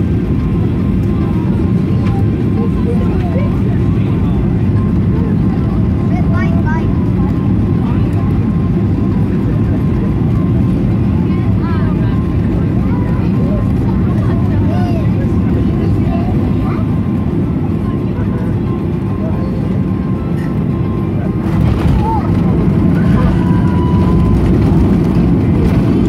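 Steady low rumble of jet airliner cabin noise on final approach, with faint passenger voices. About twenty-one seconds in comes a sharp thump as the wheels touch down, and the noise grows louder on the landing roll.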